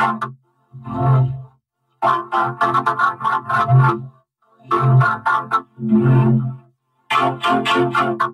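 Heavily effected, distorted audio clip played as repeated short bursts, each a buzzy pitched tone with a fast flutter, broken by brief gaps.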